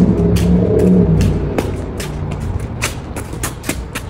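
Low steady rumble with irregular sharp clicks of footsteps and scuffs on a concrete walkway; a woman hums a held note through the first second.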